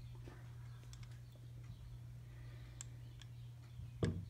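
A few faint, light clicks of small metal lathe parts being handled, over a steady low hum.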